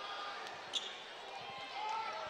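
A basketball being dribbled on a hardwood arena court, faint, over a low murmur of arena noise.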